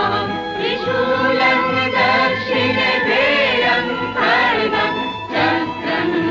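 A choir singing a devotional song with musical accompaniment, the voices holding long notes that waver in pitch.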